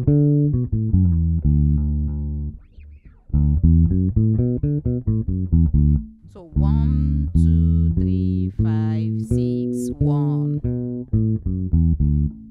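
Electric bass guitar playing the D major pentatonic scale as a run of single plucked notes, with a short break about three seconds in and another about halfway.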